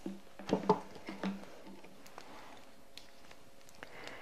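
Light knocks and handling sounds of objects being moved about on a tabletop, with two sharper knocks about half a second in, then only a few faint clicks.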